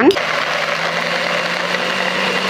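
Small electric food chopper running steadily, its blade grinding chillies, shallots, tomato and spices into a paste.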